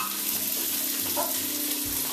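Sliced garlic and herbs sautéing in olive oil in a large pot over medium heat: a steady sizzle.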